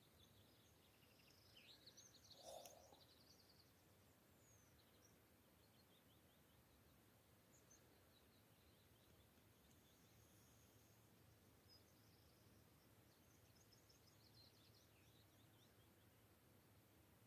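Near silence, with faint distant bird song: a few high chirps and short trills, most in the first few seconds and again near the end.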